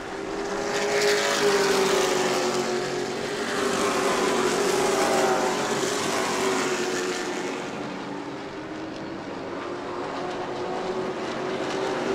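A field of Sportsman stock cars racing at speed around a short asphalt oval, their engines layered into one steady drone. It swells as the pack comes by about a second in and again around four to five seconds, then eases off as the cars move to the far side of the track.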